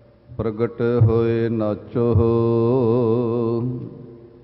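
A man's voice chanting devotional Sikh verse in two long, drawn-out melodic phrases, the second ending on a held, wavering note.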